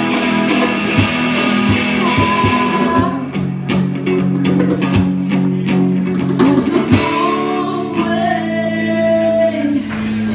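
A live rock band playing a song: electric guitar and drums under vocals. Steady beats come through the middle, and a long held note near the end.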